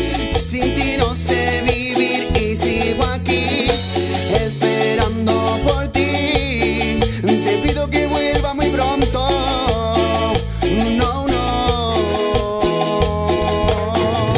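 A live Latin dance band playing: a male singer over electric guitar, bass, keyboards, timbales and a metal güira scraper keeping a steady beat.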